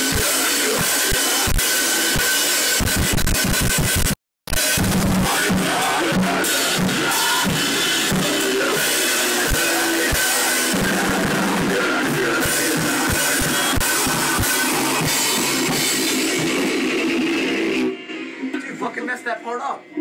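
Amateur rock band playing loudly in a small room: electric guitar, a drum kit with cymbals and bass drum, and vocals into a microphone. The sound cuts out completely for a moment about four seconds in, and the music stops about two seconds before the end.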